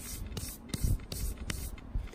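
A fingertip rubbing dirt off a small copper coin held in the palm, close to the microphone. It makes short, irregular rustling scrapes, about half a dozen in two seconds.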